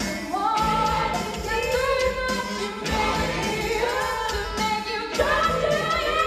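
A woman singing a song into a stage microphone over musical accompaniment, with long held notes that slide in pitch and backing vocals behind her.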